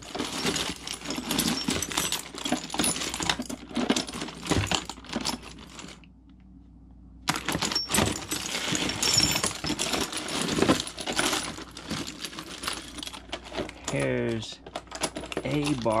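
Brass plumbing fittings clinking and clattering against each other as hands rummage through a plastic tote full of them, with a break of about a second around six seconds in.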